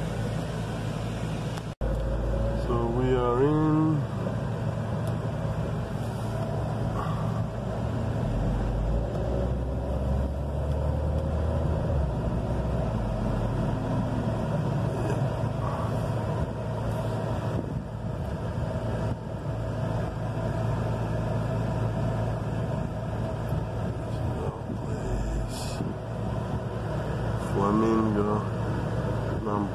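Car cabin noise while driving slowly: a steady low engine and road rumble heard from inside the car. A brief voice comes in about three seconds in, and the sound drops out for an instant just before it.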